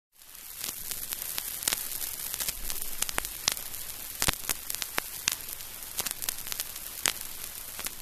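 Surface noise of an old vinyl record playing its lead-in groove: a steady hiss with irregular clicks and pops.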